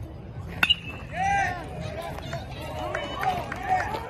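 A metal baseball bat hits a pitched ball with a sharp, ringing ping about half a second in. Voices yell right after.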